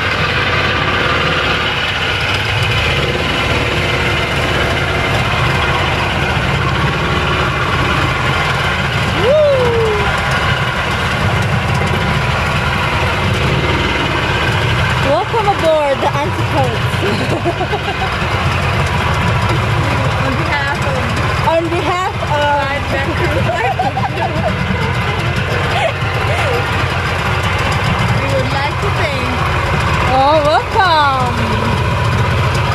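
Small motorboat's engine running steadily while the boat is under way, with the rush of water and wind over it.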